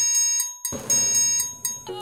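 A high-pitched, rapidly repeating ringing sound effect, like an alarm-clock bell. It comes in two bursts of under a second each, with a short break between them.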